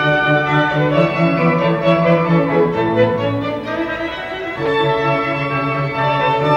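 Two violins and a cello playing classical chamber music with long bowed notes. The playing eases off briefly about four seconds in, then a new phrase enters.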